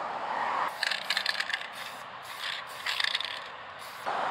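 Aerosol spray paint can hissing briefly, cutting off under a second in, then the can's mixing ball rattling in three short bursts as it is shaken.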